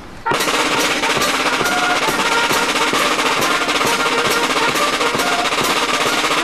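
Brass-and-drum marching band striking up suddenly: brass horns play sustained notes over bass drum and snare drums, which keep a steady beat of about two and a half strokes a second.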